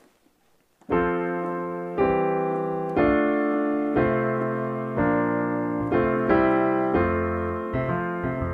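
Piano chords played on a digital keyboard, one struck about every second and left to ring, after about a second of silence. The progression is F, C/E, Dm, F/C: slash chords whose bass steps down note by note beneath the chords.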